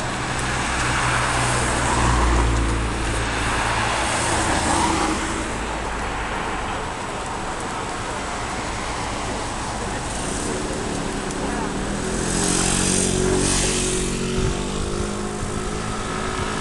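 Urban road traffic: vehicles passing on a city street, with a low engine hum loudest in the first few seconds. Another vehicle passes with a swell of tyre and engine noise near the end.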